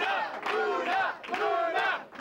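A crowd of many raised voices shouting and cheering at once, with no words made out.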